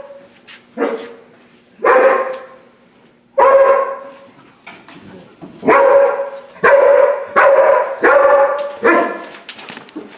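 A police patrol dog in training barking repeatedly, about eight barks, spaced out at first and then coming faster in the second half, echoing down a long hallway.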